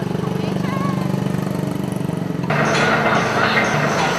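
A small engine idling in the street. About two and a half seconds in, this gives way to the loud, steady hiss of a gas torch flame.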